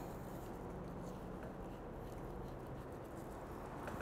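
Faint, steady low background noise with a slight hum, no distinct events.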